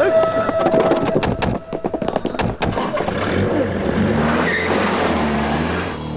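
Film sound effects: a quick string of sharp knocks or impacts, then a car engine running and revving, its pitch rising and falling, with tyre noise.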